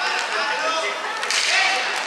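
Inline hockey game sounds: indistinct shouting from players and spectators, with sharp clacks of sticks and puck on the rink floor. The loudest moment, a clack amid raised voices, comes about one and a half seconds in.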